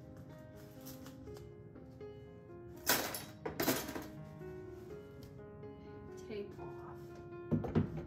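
Soft background piano music, with two short tearing rustles about three seconds in, as paper towel is pulled off a roll, and a brief knock near the end.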